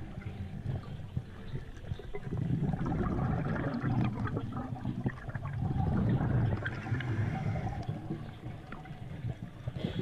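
Underwater sound of a scuba diver's exhaled air bubbling up, swelling and easing in slow waves a few seconds apart.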